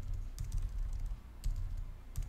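A few separate keystrokes on a computer keyboard, about half a second in and again around a second and a half, over a low steady hum.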